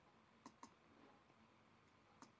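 Computer mouse clicking: two faint, sharp clicks about a fifth of a second apart, about half a second in.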